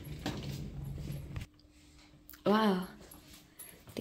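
A short wordless human vocal sound, rising and then falling in pitch over about half a second, about halfway through. Before it, for the first second and a half, there is a low hum with handling noise.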